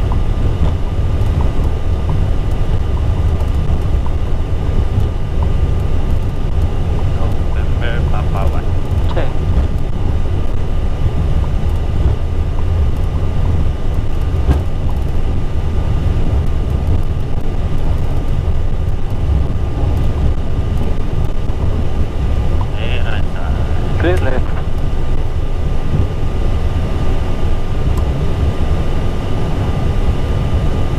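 Airbus A320 cockpit noise while taxiing: a loud, steady low rumble from the idling jet engines and cockpit airflow, with a thin steady whine over it.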